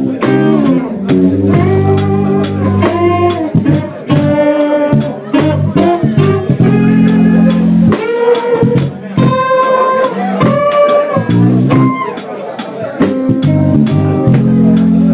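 A live blues trio playing: a Parker Fly electric guitar through a Koch Studiotone amplifier plays lead lines with bent notes over electric bass, with the drummer's cymbals struck about twice a second.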